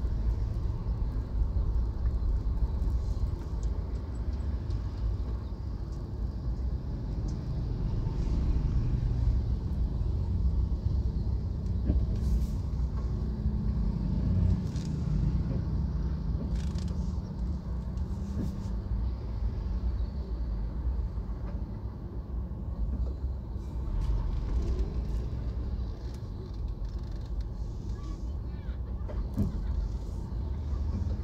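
Low, steady rumble of a car's engine and tyres heard from inside the cabin while crawling in slow traffic on an unpaved road, with an engine hum that comes up in the middle and fades again.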